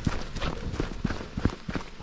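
Quick footsteps of a person trotting down a grassy, rutted earth track, a rapid run of soft steps.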